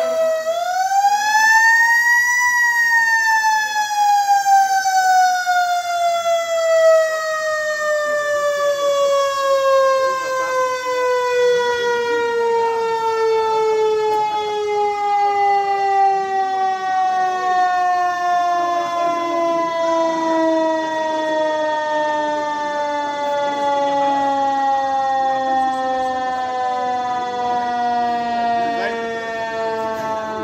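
Fire truck's mechanical siren winding up to a peak about two seconds in, then slowly winding down in pitch as one long falling wail.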